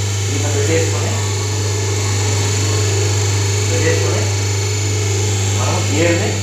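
Steady electric motor hum of a semi-automatic hydraulic paper plate making machine running, with indistinct voices in the background.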